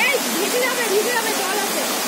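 Waterfall cascading over rock ledges: a steady, even rush of falling water.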